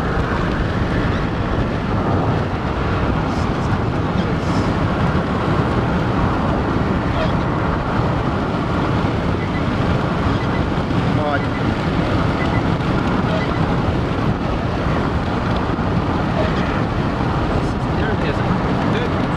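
Steady road and wind noise of a car driving at speed, an even rumble of tyres and engine with wind over the body.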